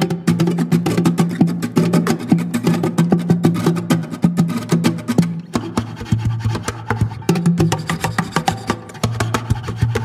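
Instrumental Brazilian music from an acoustic plucked-string duo: a quick stream of sharply picked notes over a low bass line, easing briefly about halfway through.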